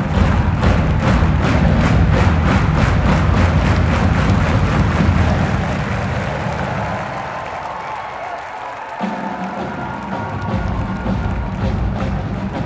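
Large university marching band playing live with a steady, loud beat of about three strokes a second over heavy low brass. The sound thins out midway, and the low brass comes back in strongly about nine seconds in.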